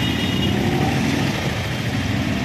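A motor vehicle engine running steadily close by, a dense low rumble with street noise.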